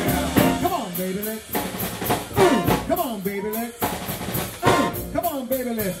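Live big band music: drum kit hits with three short pitched phrases that swoop up and down.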